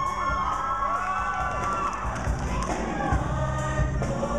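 Live show choir singing with its accompanying band, with audience cheering and whoops rising over the music in the first half.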